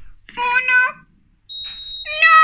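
A short high-pitched whine, then about one and a half seconds in a single steady high electronic beep starts and holds: a heart-monitor flatline tone marking the patient's death.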